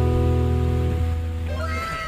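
The last strummed chord of an acoustic guitar ringing on and fading away. Near the end a high voice breaks in with a falling, gliding exclamation.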